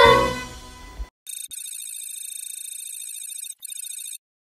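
A high, fast-trilling electronic ring, like a telephone ringtone, sounds for about three seconds with a brief break near the end. Before it, a children's choir song with accompaniment fades out in the first second.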